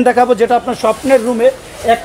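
A man talking steadily in Bengali, with only short pauses.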